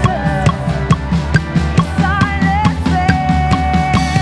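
Live worship band with a drum kit playing a steady beat of bass drum and snare under held keyboard chords and a sung melody.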